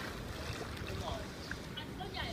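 Steady low rumble of wind buffeting the microphone by an outdoor pool, with faint voices and light water sounds in the background.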